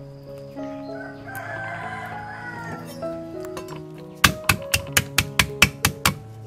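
A cleaver chopping water spinach stems on a wooden chopping board: a quick run of about nine sharp chops in the last two seconds. Before that a rooster crows, over steady background music.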